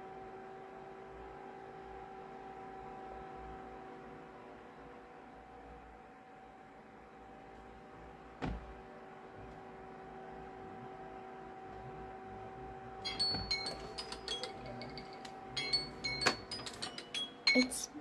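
Smartphone timer alarm going off about two-thirds of the way in: a quick repeating melody of short, high chiming tones. Before it, only a steady low hum with a single click.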